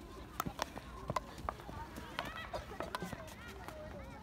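Field hockey sticks tapping a ball on artificial turf during dribbling: irregular sharp clicks, with distant children's voices chattering behind them.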